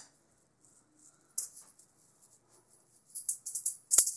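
Metal-ring (chainmail) juggling balls jingling as they are handled and thrown. There is one brief jingle about a second and a half in, then a quick run of jingles in the last second as a new five-ball run starts.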